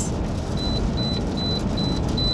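Car seatbelt reminder chime beeping in an even, rapid series of high beeps, about two and a half a second, starting about half a second in, over the steady low rumble of the vehicle. The chime signals an unbuckled seatbelt.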